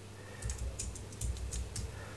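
Computer keyboard typing: a quick run of key presses starting about half a second in.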